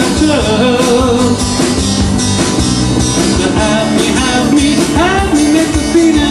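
Live rock-and-roll band performance: a man singing over acoustic guitar and the band.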